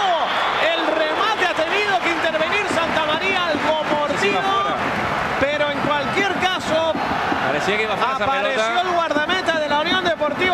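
Men's voices talking over the noise of a football stadium crowd.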